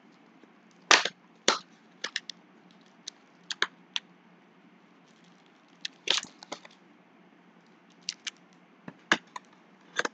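Foil-wrapped trading card packs and their cardboard box being handled, giving a string of sharp crinkles and snaps. The loudest come about a second in, half a second later, and again around six seconds in.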